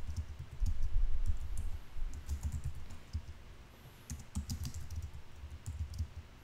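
Typing on a computer keyboard: a quick run of keystrokes, each with a dull thud, a short lull about three seconds in, then more keystrokes.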